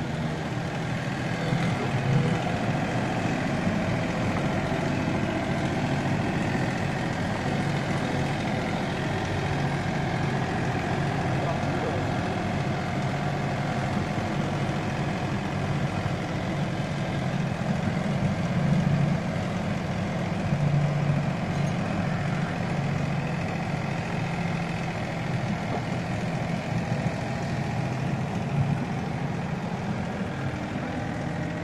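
A diesel engine idling with a steady, even hum throughout.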